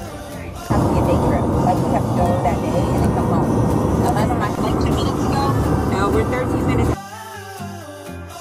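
Soft background music, broken about a second in by a loud stretch of voices over the rumble of a moving car's cabin, which cuts off suddenly near the end as the music returns with a steady beat.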